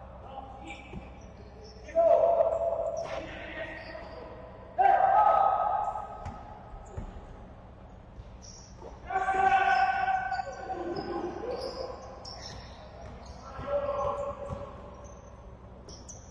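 Basketball being dribbled and bounced on a wooden court in an echoing sports hall, with players shouting. Four loud calls stand out, a few seconds apart.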